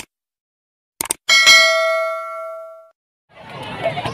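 Subscribe-button sound effect: a click, then two quick clicks about a second in, followed by one bell-like notification ding that rings out and fades over about a second and a half. Crowd noise from the volleyball match comes back near the end.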